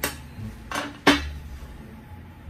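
Three short, sharp knocks or clinks, the last and loudest about a second in.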